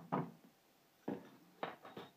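Metal measuring spoons being handled and set down on a kitchen counter: two short clattering knocks, about a second in and again just after a second and a half.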